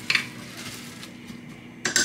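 A spoon clinking against a glass jar of minced garlic and the crock pot: one sharp click just after the start, then several quick ringing clinks near the end.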